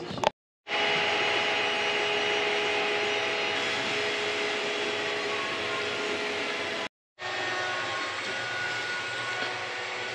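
Creality 3D printer running a print: a steady fan noise with a few held motor whines and short whining slides as the print head moves. The sound drops to dead silence twice, briefly, early on and about seven seconds in.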